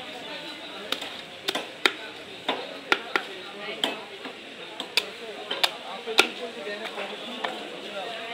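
Heavy knife chopping through a large rohu (rui) fish on a wooden log chopping block: about a dozen sharp, irregularly spaced chops, the loudest about six seconds in.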